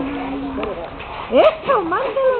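A person's voice: one held note, then a short rising and falling exclamation near the end.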